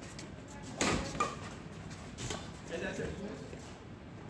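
Badminton rally ending: a few sharp racket strikes on the shuttlecock, the loudest about a second in, followed by players' voices in a large hall.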